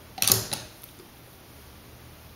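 A brief creak-and-clatter of a small object being handled and set down on a bathroom counter, about a quarter second in, followed by a couple of light clicks.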